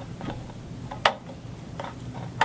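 A few small clicks and taps from a paper clip and rubber band being handled against a paper cup and cardboard wheel, with one sharp click about a second in.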